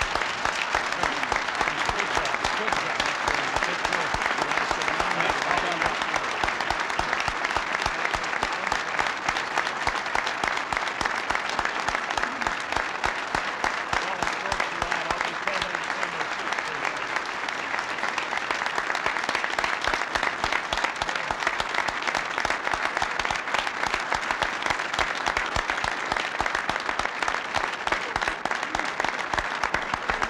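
A large audience applauding steadily: a dense, unbroken clatter of many hands clapping that holds at an even level throughout.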